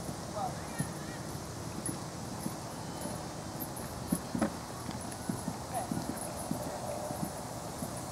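Hoofbeats of a cantering horse on a sand arena: irregular dull strikes, loudest and most frequent from about halfway through.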